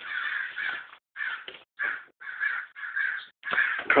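Crows cawing nonstop, one call after another about every half second. They are "going nuts": agitated alarm calling because a dog has just killed one of their kind.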